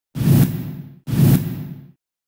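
Two identical whoosh sound effects of a news channel's logo sting, one right after the other, each coming in sharply and fading away over most of a second.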